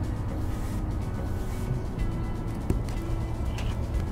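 Soft background music over a steady low rumble of outdoor ambience.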